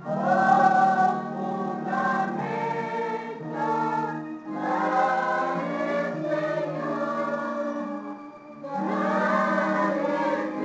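Choir singing a hymn in sustained phrases, with a short break about eight seconds in before the next line.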